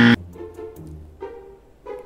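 Edited comedy 'wrong answer' sound effect: a short, loud buzz right at the start, followed by a faint music sting.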